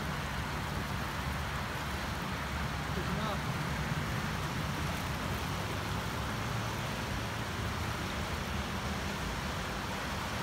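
Muddy flash-flood debris flow rushing down a creek channel and over gravel bars: a steady, even rushing noise of churning water.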